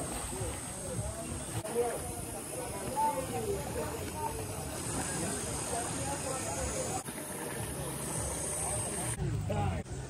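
Outdoor ambience of faint voices of people talking in the background, over low wind rumble on the microphone and a steady high hiss. The sound changes abruptly several times as short clips are joined.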